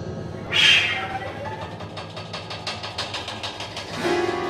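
Contemporary chamber music: about half a second in, a sudden loud high wail that falls in pitch, then a fast, even percussion rattle of about seven strokes a second.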